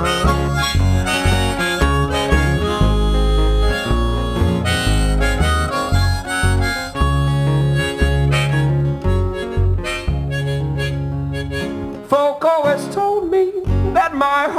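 A live band playing an instrumental break: harmonica leading over strummed acoustic guitar and upright bass, with bending harmonica notes near the end.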